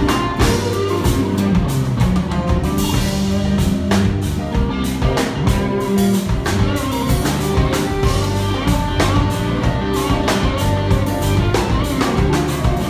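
A live band playing an instrumental rock passage without vocals: electric guitar over a drum kit keeping a steady beat.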